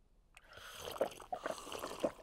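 Cartoon sound effect of a glass of water being drunk down in a run of gulps and slurps, starting about half a second in.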